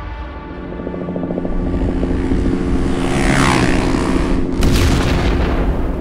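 Film-trailer sound mix: a sustained low music drone with the rumble of heavy truck engines, building through a rising swell to a boom about four and a half seconds in.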